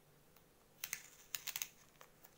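A few light, sharp clicks and crackles, in two small clusters about a second in and a half-second later, from small items being handled on a tabletop.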